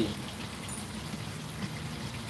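Catfish frying in oil in a pan over a wood fire: a steady, rain-like sizzle.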